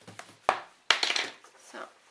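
Two sharp clicks or knocks about half a second apart, the second followed by a short scraping rustle: makeup items being handled and set down between steps.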